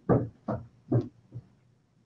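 Footsteps walking away on a hard floor, about two steps a second, fading out and stopping about a second and a half in.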